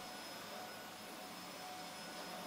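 Upright vacuum cleaner running faintly and steadily as it is pushed over carpet: an even whooshing hiss with a thin steady whine.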